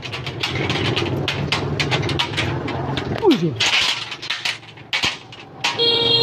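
Corrugated metal roofing sheets clattering and scraping as they are handled and stacked: a run of irregular clicks and knocks over a low steady hum. A brief falling pitched sound comes a little past three seconds in.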